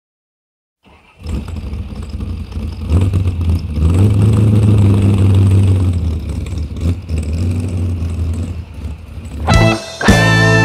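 A vehicle engine coming in about a second in and running, its pitch rising as it revs around three to four seconds in. Guitar music starts near the end.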